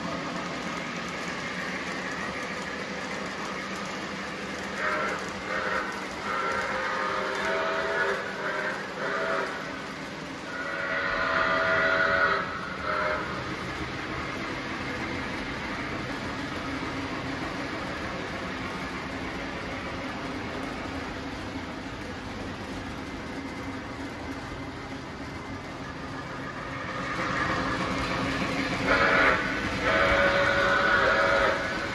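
Lionel O-gauge Polar Express model train running on the track with a steady rumble. The steam locomotive's whistle sounds in several short blasts, then one longer blast, in the first half, and again near the end.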